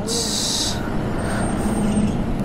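Steady motor-vehicle and road noise, with a short high hiss in the first second.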